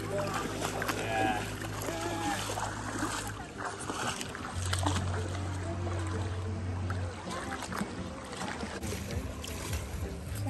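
Soft background music with long held low notes, over the wash of a shallow river and faint distant voices.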